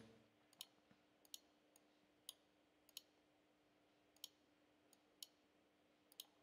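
Six faint, sharp computer mouse clicks, roughly one a second, as buttons on an on-screen calculator are clicked; otherwise near silence with a faint steady hum.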